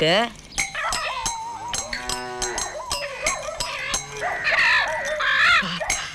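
Film soundtrack: brief voices and vocal sounds over music, with scattered sharp clicks.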